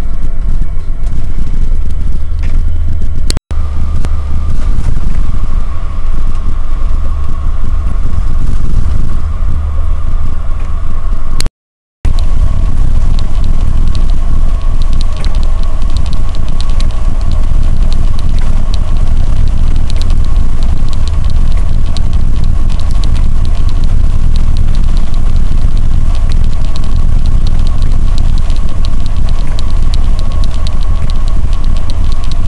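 Cab noise of a large vehicle driving on a wet highway in rain: a loud, steady low rumble of engine and road with a steady whine above it and many faint small ticks. The sound cuts out briefly twice, at about 3 seconds and again near 12 seconds.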